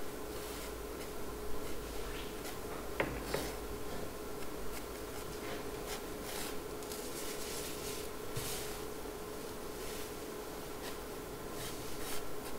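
Graphite pencil drawing lightly on watercolour paper: soft, intermittent scratching strokes of a faint preparatory sketch. A steady faint hum runs underneath.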